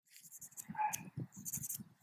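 Dry sticks being handled, with light clicks and rustling, and a brief short call just under a second in.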